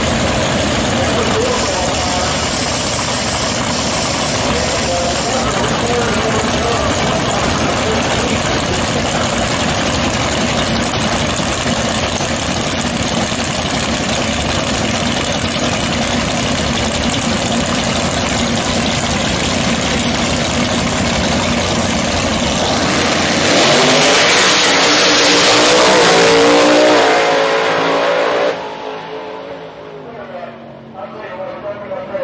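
Two drag cars' engines running loud at the starting line, then launching about 23 seconds in, the engine note rising hard as they accelerate away. The sound drops off sharply about 28 seconds in as the cars get further down the track.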